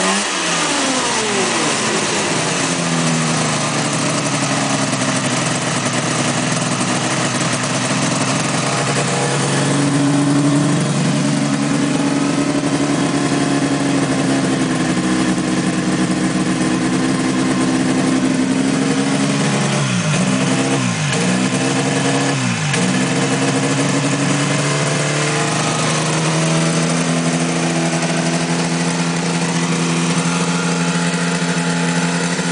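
A 1976 Mercury Trail Twister 440 snowmobile's two-stroke twin engine running. It settles from higher revs in the first few seconds to a steady idle, and about two-thirds of the way through the revs dip sharply and recover three times.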